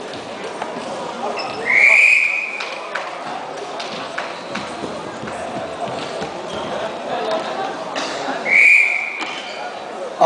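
Referee's whistle blown twice, two short blasts each opening with a quick rise in pitch, about seven seconds apart, over the steady background chatter of a sports hall.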